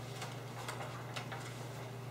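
Paper rustling and small clicks as sheets are handled and pens mark pages on tabletops, a few short sharp sounds scattered over a steady low hum.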